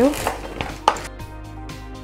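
Wooden spatula mixing chopped cabbage, beet and herbs in a plastic bowl: a few knocks and scrapes against the bowl, the sharpest about a second in.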